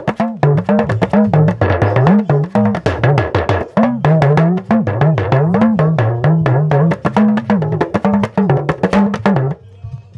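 Small hourglass talking drum struck rapidly with a curved stick, its pitch bending up and down as the tension cords are squeezed. It is a solo-style passage that breaks the rhythm, and the playing stops shortly before the end.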